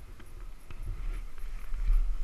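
A 450 sport quad on a rough dirt trail: irregular knocks and rattles from the machine and the helmet camera jolting over bumps, over a low rumble.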